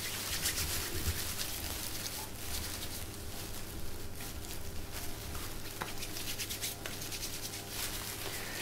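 Hands rubbing together with alcohol hand gel for hand hygiene: a faint, continuous scratchy rubbing of skin on skin.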